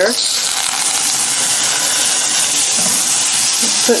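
A pat of butter sizzling steadily as it melts and foams in a hot stainless steel frying pan.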